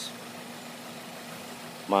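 Steady low mechanical hum, even and unchanging, over faint background noise.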